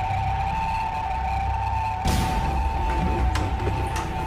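Ship's fire alarm sounding as a steady two-pitch tone over tense background music with pulsing low notes, and a brief whoosh about two seconds in.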